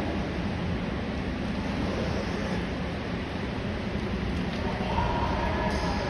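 Steady rumbling background noise of an indoor pool hall, with air-handling hum and water from the pool, echoing off hard tiled surfaces.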